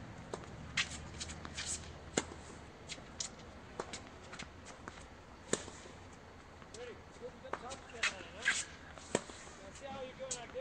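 Tennis balls being struck with rackets and bouncing on the court: a series of sharp, irregularly spaced hits, the loudest about two, five and a half and nine seconds in.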